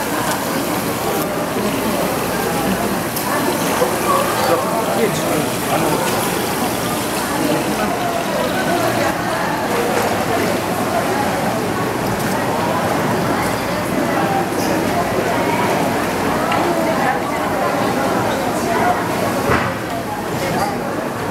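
Fish market crowd chatter: many voices talking over one another at a steady level, with water running and splashing in the seafood tanks.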